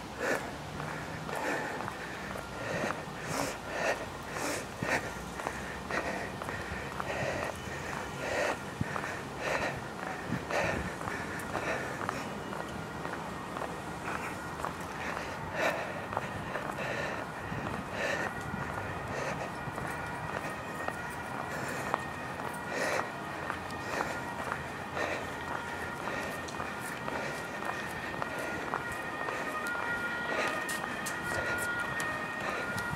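Footsteps of a man walking on paving stones at a steady pace with a heavy sandbag on his shoulders, with hard breathing from the effort. A steady high tone comes in about halfway through and carries on.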